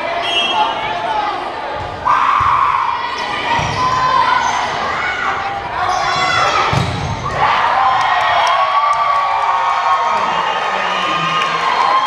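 Volleyball rally in a gymnasium: the ball is served and struck several times with dull thumps, while players call out and spectators shout and cheer, louder from about two-thirds of the way in as the point ends.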